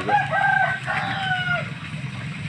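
A rooster crowing: one crow of about a second and a half, its last long note dropping in pitch at the end, over a steady low hum.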